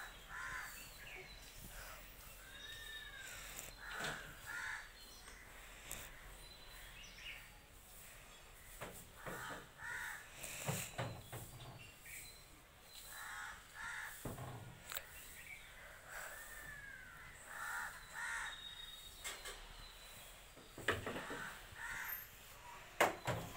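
Crows cawing on and off, in short groups of harsh calls every few seconds.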